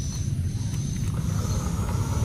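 Battery-powered toy steam locomotive running along plastic track, a steady, even running sound.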